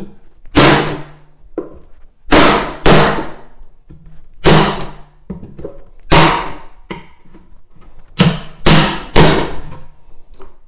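Steel claw hammer striking a floorboard chisel set in the groove of tongue-and-groove floorboards, a series of hard ringing blows, some in quick pairs. The blows drive the chisel in to split away the hidden tongue so the board can be lifted.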